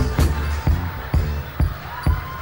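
Live stage band playing an instrumental break between sung lines: drum beats about twice a second over a low bass line that fades out toward the end.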